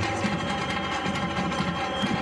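Batucada samba percussion group playing a dense, steady rhythm on surdo bass drums and snare drums struck with sticks and mallets. A thin steady high tone is held over the drumming from about half a second in.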